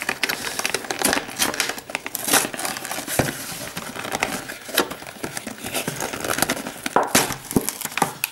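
Clear plastic blister packaging crinkling and crackling as it is peeled open by hand from its cardboard backing, a dense run of irregular sharp crackles.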